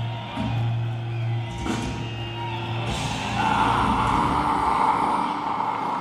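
Live death metal band at the end of a song: a low note held and ringing from the amplifiers, with the crowd cheering more loudly from about halfway through.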